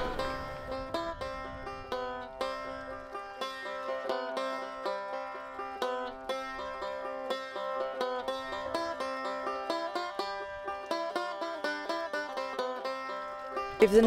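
Background music: a banjo picking a quick, even run of plucked notes.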